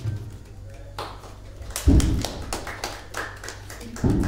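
Scattered hand claps from a small audience, starting about a second in, as applause at the end of a song. There is a low thump at about two seconds.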